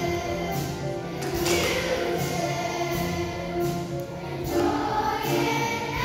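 Children's choir singing a song with musical accompaniment.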